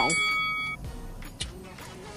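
A clear ringing tone of several steady pitches together, like a small metal chime, that stops abruptly less than a second in, followed by quiet with a couple of faint clicks.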